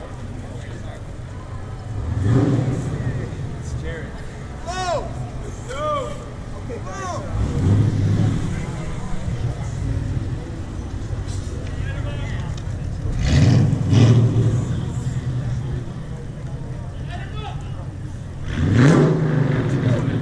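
Car engines revving in loud bursts four times over a steady low engine hum, the last rev rising in pitch. Between them come several short rising-and-falling calls from people in the street.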